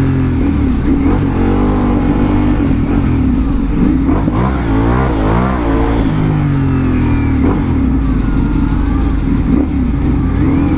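Ducati Multistrada V4 Pikes Peak's V4 engine running at low revs in first gear, loud and close. Its pitch rises and falls with short throttle openings, several quick swings coming about four to six seconds in.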